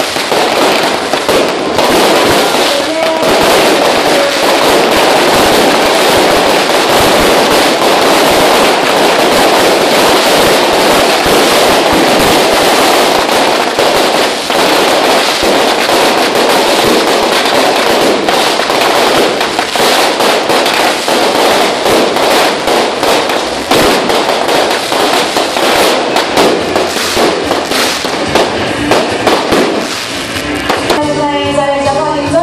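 A dense barrage of firecrackers and ground-laid firework batteries going off nonstop, a rapid, continuous crackle of bangs at high level.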